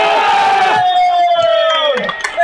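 A long, loud celebratory shout, held about two seconds with its pitch slowly falling, over other shouting voices as a goal goes in.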